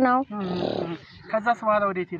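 A woman's voice: a short breathy, grunt-like vocal sound, then a few quieter spoken syllables.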